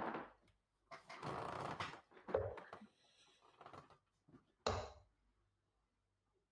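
Steel-tip darts striking a bristle dartboard: two sharp thuds about two and a half seconds apart, with softer handling and movement noise between the throws.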